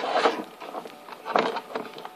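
Two short, soft scraping rustles of a small light bulb being rubbed and moved against a plastic bin to build up static charge, about a quarter second in and again about a second and a half in.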